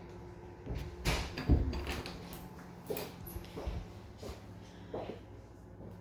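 A door being opened, a few knocks and a thump about a second in, followed by light, evenly spaced taps of footsteps, over a faint steady low hum.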